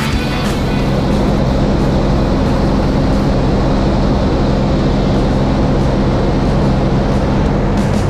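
Steady drone of a small plane's engine and rushing air in flight, under background music with no drum hits.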